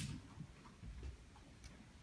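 Faint footsteps: shoes on a stage floor, a handful of light, irregularly spaced clicks.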